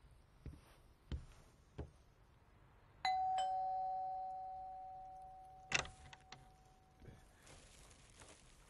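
Two-tone ding-dong doorbell rung about three seconds in: a higher note, then a lower one, both ringing on and fading away over about four seconds. A few soft thumps come before it, and a short clatter of clicks comes near six seconds.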